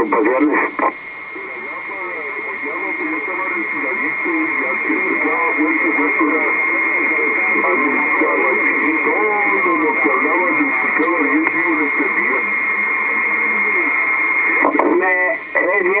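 Voice over a Kenwood TS-950SDX HF transceiver's speaker: a garbled, unintelligible transmission, thin and cut off in the highs, with a steady high whistle running under it. The signal drops out briefly about a second in, then slowly fades back up.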